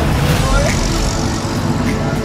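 A small utility vehicle running close by on the street, its engine rumble and tyre noise mixed with general traffic.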